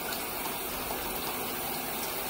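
Water running steadily into a bathtub, an even rushing splash.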